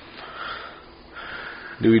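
A person breathing in through the nose close to the microphone, twice, in a pause in the conversation. A man's voice starts speaking near the end.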